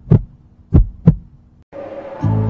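Heartbeat sound effect: deep low thumps, one just after the start and then a double lub-dub beat about a second in. A faint hum comes in near the end.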